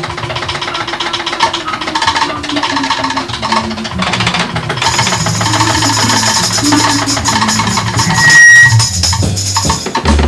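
A jazz-rock band plays an instrumental led by two drummers on full drum kits: busy tom and cymbal playing over a held low bass note. There is a loud accent about eight and a half seconds in.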